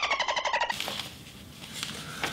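Short edited-in censor sound effect: a rapidly pulsing tone, about a dozen quick pulses sliding slightly down in pitch, cut off after under a second, followed by faint room tone.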